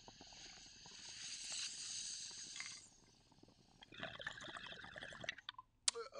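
A hit from a glass water bong. Hissing air and flame come with water bubbling in the bong as the smoke is drawn through, for about three seconds. After a short pause there is a second, shorter stretch of bubbling and gurgling.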